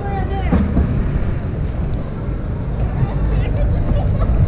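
Busy exhibition-hall ambience: steady background crowd chatter over a low rumble, with a nearby voice briefly in the first second.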